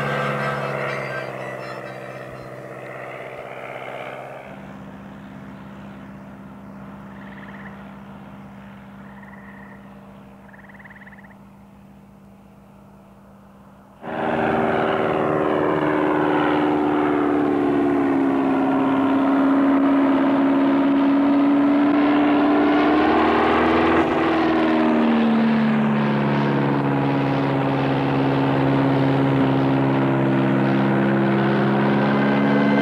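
A light single-engine biplane's engine and propeller, starting loud and sudden about 14 seconds in and running on steadily, its pitch sagging for several seconds and then rising again. Before that, a faint steady hum follows the fading end of some music.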